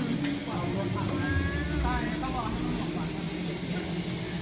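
Indistinct voices of several people, short snatches of talk or exclamations about a second in, over a steady low hum of room noise.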